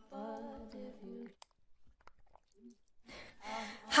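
A person's voice holding a single low hum-like note for about a second, followed by a few faint clicks.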